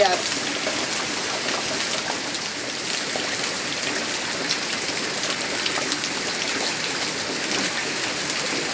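Heavy rain falling steadily onto flooded ground: a dense, even patter of drops on standing water.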